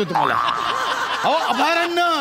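Laughter mixed with a man's voice, his voice rising and falling in drawn-out sounds in the second second.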